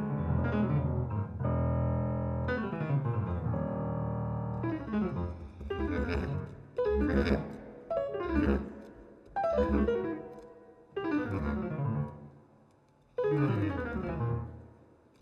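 Yamaha grand piano played solo. It opens with dense, sustained chords, then from about a third of the way in it strikes single chords a second or two apart, each left to ring and fade before the next.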